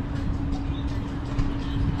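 Downtown street traffic: a steady low rumble with one even engine hum held throughout.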